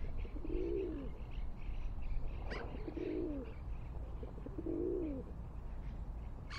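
A wild dove or pigeon cooing three times, low soft coos about two seconds apart. A short sharp bird call cuts in just before the second coo, over faint chirping of small birds.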